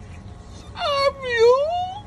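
A wailing, voice-like cry in two parts, starting a little under a second in: a short falling note, then a longer one that dips and rises again.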